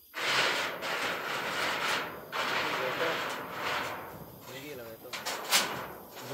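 A corrugated metal roofing sheet scraping and sliding over a wooden pole frame as it is hauled up, in two long noisy drags, followed by a sharp clack near the end.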